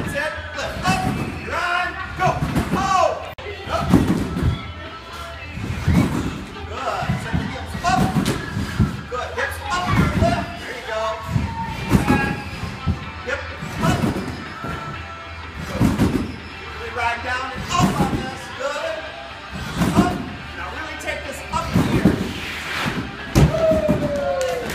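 Trampoline bed thudding under a gymnast's bounces, about one landing every two seconds, with music and voices over it.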